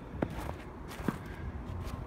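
Footsteps on snow-covered pavement, with two small sharp clicks, one just after the start and one about a second in.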